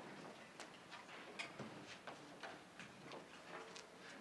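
Near silence in a hall, with faint, irregular small clicks and rustles from a seated band readying its instruments before a piece.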